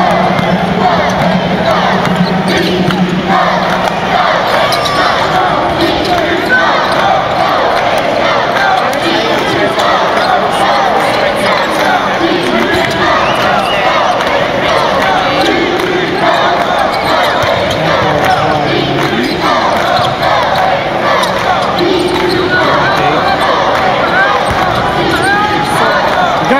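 Live basketball game sound in an arena: the ball bouncing on the hardwood court under steady crowd noise, with nearby spectators' voices and shouts.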